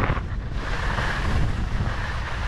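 Wind buffeting the microphone during a ski run, a steady low rumble, with the hiss of skis sliding over packed snow rising about half a second in.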